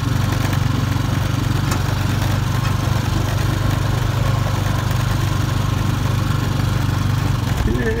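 Honda ATV engine running at a steady pace while riding, a constant low drone that eases off near the end.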